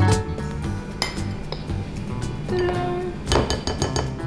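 A metal spoon and a plastic measuring cup clinking against a glass flour jar and a glass mixing bowl as flour is scooped and tipped in: a few light clinks, about a second in and again in a short cluster near the end. Background music with a steady beat plays under them.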